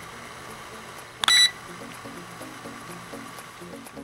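One short, loud electronic beep about a second in, over faint background music with short low notes and a steady hiss.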